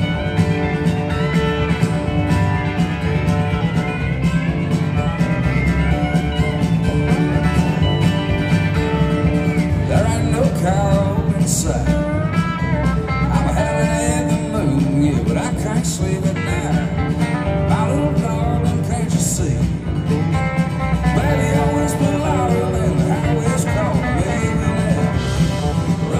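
A country band playing live: acoustic and electric guitars, pedal steel, bass guitar and drums in a loud, steady full-band passage, with lead lines bending in pitch around the middle.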